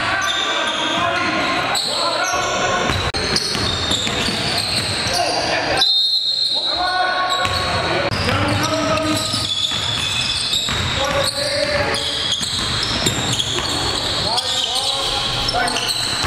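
Sounds of a basketball game in a gymnasium: players' voices calling out over a basketball bouncing on the hardwood court, echoing in the hall.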